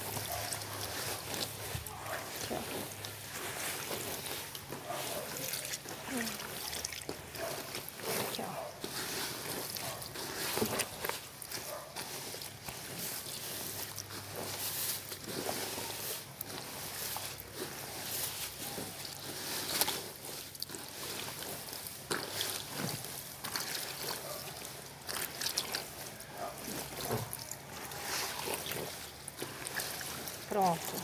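Wet laundry being swirled and turned by hand in a plastic washtub of soapy water: irregular sloshing and splashing, the clothes being agitated to work up a lather.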